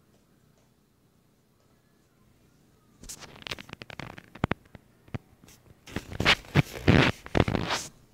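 Handling noise close to the microphone: a quick run of rubbing, scraping and knocking starting about three seconds in, loudest near the end.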